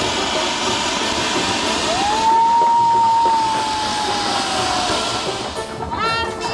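A ground fountain firework (anar) hissing steadily as it sprays sparks. Just before two seconds in, a single whistle rises sharply, then holds and sinks slowly in pitch for about three seconds.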